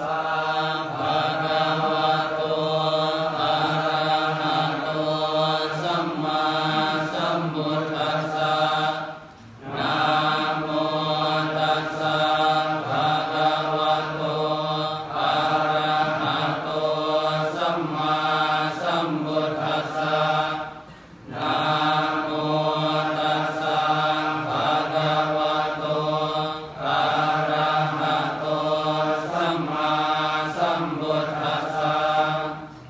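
A group of Buddhist monks chanting Pali in unison on a near-steady pitch, with three brief breaks for breath.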